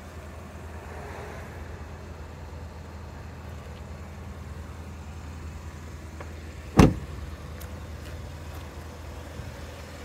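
An SUV's front passenger door shut once, a single sharp thud about seven seconds in, over a steady low hum.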